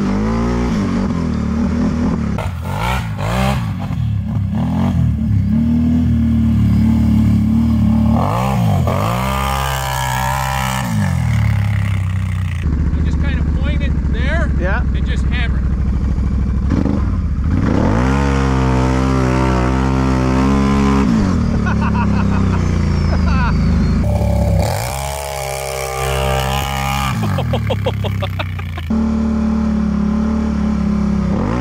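Can-Am ATV engine under way, its revs rising and falling again and again between steadier stretches as the quad is ridden, with a dip in level about 25 seconds in.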